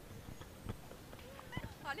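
A man's quiet, breathy laughter: short puffs and clicks with a brief voiced sound near the end.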